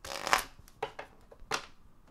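Golden Universal Tarot cards being shuffled by hand: one longer shuffle stroke at the start, then three short ones.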